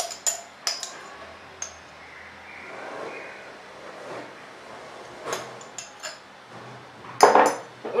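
Light clinks of a metal spoon and small glass spice jars against each other and a ceramic bowl as spices are spooned out: a few sharp clinks near the start and a few more past the middle.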